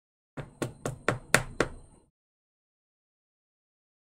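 A quick run of about six sharp plastic clicks and taps as a trading card in a hard clear plastic holder is handled and set down.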